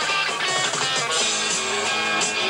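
Rock band playing live: electric guitar over bass guitar and drums, with repeated cymbal strokes.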